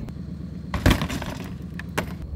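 Shot-out car window glass breaking and crashing, one loud crash a little under a second in followed by a couple of smaller clinks, over a low steady hum.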